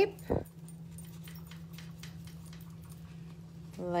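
Paper towel wiping across a stamped metal jewelry blank on a steel bench block to take off excess enamel marker, a faint irregular rubbing over a steady low hum. A short low thump comes a fraction of a second in.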